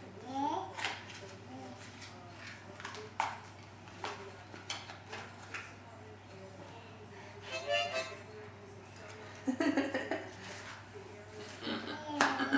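A toddler handling a harmonica and its small cardboard box: scattered light clicks and taps, with a short, faint harmonica puff about ten seconds in, over a low steady hum.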